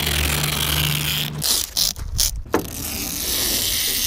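Masking tape being pulled off the roll in long strips, a crackling rip. There is one long pull, a few short ones about halfway through, then another long pull.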